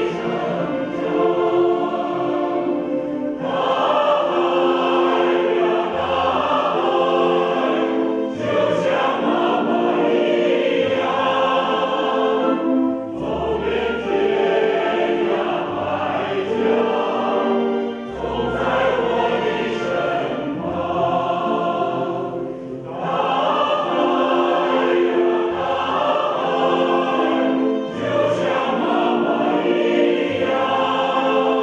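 Mixed choir of women and men singing in long phrases, with short breaks about every five seconds and low sustained bass notes underneath.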